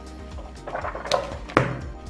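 Paper pages of a softcover workbook being flipped, a short rustle, then a sharp knock about a second and a half in, over background music.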